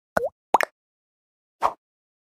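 Cartoon pop sound effects from an animated subscribe-button outro: two short pops, each with a quick dip and rise in pitch, then a single softer click near the end, with silence between.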